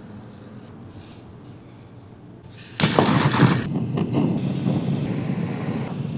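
Handheld butane torch lit just before three seconds in, its flame then hissing steadily with irregular crackling as it caramelizes sugar on banana halves.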